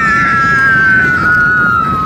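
A child and another rider on an amusement ride scream together in one long, high, held scream that slides slightly down in pitch. Wind rumbles on the microphone underneath.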